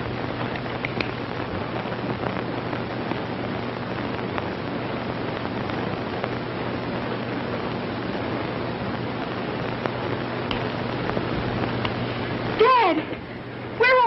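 Steady hiss with a low hum underneath: the background noise of an old early-sound-era film soundtrack, with nothing else standing out until a short vocal cry near the end.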